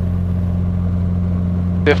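Socata TB10 Tobago's four-cylinder Lycoming engine and propeller at full takeoff power, a steady deep drone heard from inside the cockpit as the plane accelerates down the runway on its takeoff roll.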